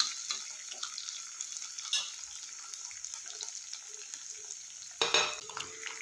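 Green chillies and dried red chillies sizzling steadily in hot oil in a small black kadai as a steel spoon stirs them, with a few light clicks of the spoon against the pan. The sound swells louder about five seconds in.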